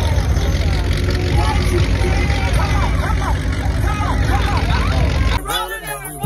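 A pickup truck's engine rumbles steadily as it rolls by, with several people's voices and shouts over it. Near the end it gives way to music.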